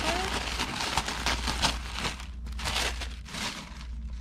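Tissue-paper wrapping crinkling and rustling in irregular bursts as it is torn open and pulled back by hand, dying down near the end.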